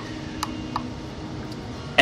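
Two faint clicks, about a third of a second apart in the first second, from the small tactile push buttons on a DC-DC buck converter's control board being pressed.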